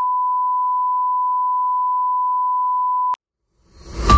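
A steady high-pitched censor bleep, one pure electronic tone held for just over three seconds over the speech and then cut off abruptly. Near the end, intro music fades in.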